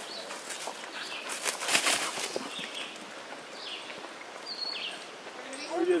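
Steps crunching and rustling through dry leaf litter, loudest in the first two seconds, with a few faint high chirps later on.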